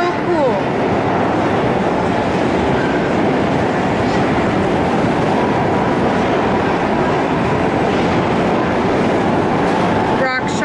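Loud, steady arcade din of game machines and crowd noise blended into one dense wash of sound.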